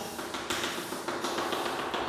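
Chalk tapping and scraping on a chalkboard as lines are drawn, with a few sharp taps.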